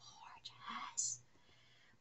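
A woman whispering faintly under her breath for about a second, with no voiced tone, ending in a short hiss.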